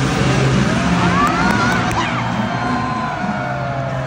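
A dirt bike engine revs, the pitch rising and then holding, over loud arena music and crowd noise.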